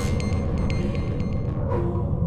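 Electronic music with a heavy, steady bass, a high repeating synth pattern over it in the first second and a half.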